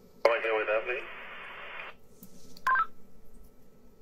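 Two-way radio transmission: a brief tinny voice, then about a second of static hiss that cuts off abruptly, and a short two-tone beep a little later.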